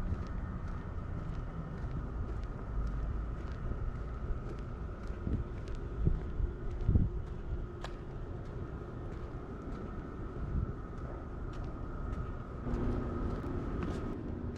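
Outdoor traffic ambience: a steady rumble of car traffic and wind on the microphone, with faint footstep clicks and a few low thumps of wind gusts. A vehicle's engine hum rises near the end.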